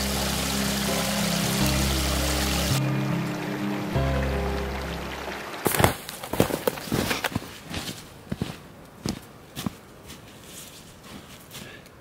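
Background music over a small stream of snowmelt trickling among rocks; the water stops abruptly about three seconds in. The music ends about five and a half seconds in, followed by irregular footsteps crunching in snow.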